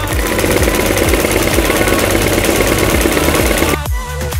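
Small electric mini sewing machine running, its needle stitching rapidly through fabric, and stopping suddenly near the end. Dance music with a steady beat plays underneath.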